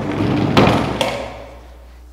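Wooden platform on small caster wheels rolling across a plywood stage, then knocking into a stop block, with a second sharp knock about half a second later.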